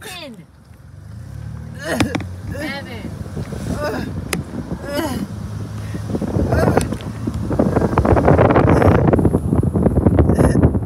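A voice gives several short wordless cries that glide in pitch, mostly falling. From about seven seconds in, loud wind rushes and buffets over the phone microphone as it moves.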